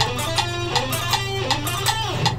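Electric guitar playing a fast alternate-picked run of sixteenth notes at 160 beats a minute, changing strings after an upstroke. Steady clicks mark the beat underneath.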